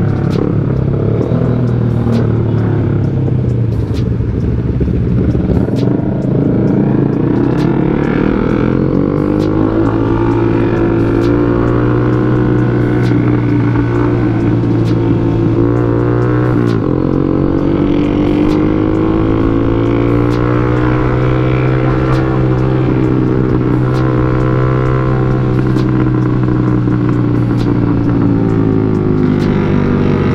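Motorcycle engine and exhaust heard from the rider's seat while riding in traffic. The engine pitch climbs and holds as it accelerates, drops suddenly about halfway through at a gear change, then climbs and holds again.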